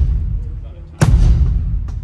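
Kick drum struck once about a second in: a deep boom with a sharp attack that rings on. The previous hit is still dying away at the start, part of a slow run of single hits about a second and a half apart.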